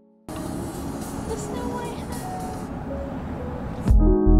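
Steady road and engine noise heard from inside a moving car, cutting in about a third of a second in and stopping just before the end.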